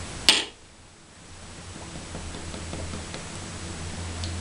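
A single sharp click a fraction of a second in, then quiet room tone with a steady low hum.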